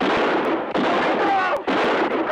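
A man screaming and yelling in pain, in several loud harsh bursts just under a second each. The voice is badly distorted into a hissing crackle by a cheap, damaged DVD soundtrack.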